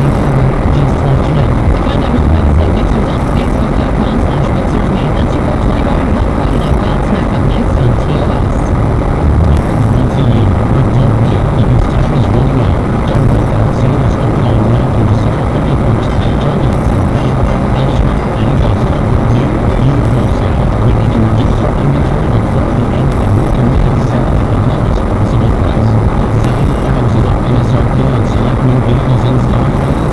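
Steady in-cabin driving noise of a car: engine and tyres on a wet road, heard through the car's interior.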